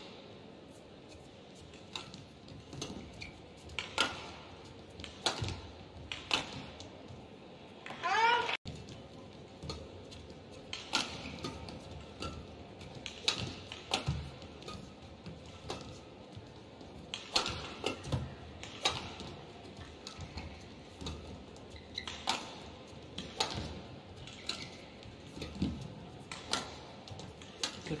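Badminton rally: sharp racket strikes on the shuttlecock, roughly one a second, with a squeak of a shoe on the court about eight seconds in, over a low steady hall background.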